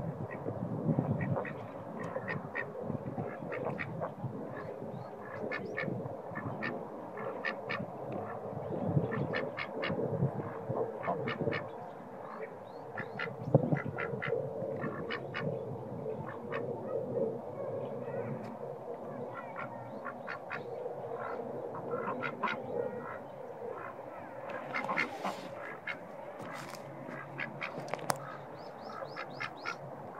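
White domestic ducks quacking in frequent short calls, the calls coming thickest and loudest near the end.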